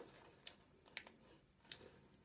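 Near silence: room tone with three faint, short clicks, about half a second in, at one second and near the end.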